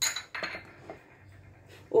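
A sharp clink of kitchenware with a brief high ring, followed by a couple of lighter knocks and taps as utensils are handled.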